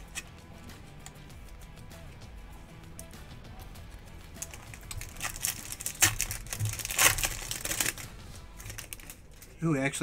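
Foil wrapper of a Topps Chrome card pack crinkling and tearing open, from about five seconds in until about eight, loudest around six and seven seconds.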